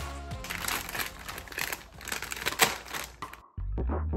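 Crinkling of a silver foil plastic mailer bag being handled and opened, in a rapid irregular crackle that stops abruptly near the end, over background pop music.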